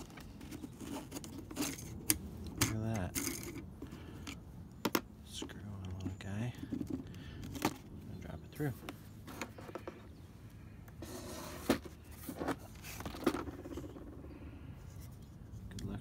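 Hard plastic clicking, knocking and scraping as a small door-panel tweeter in its plastic housing is worked loose and pulled out of its mount in the BMW E46 door trim, with a handful of sharp clicks spread through.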